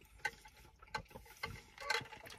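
Quiet eating sounds: a handful of faint, short clicks and mouth noises from chewing and a fork at a plastic plate, over a low steady hum.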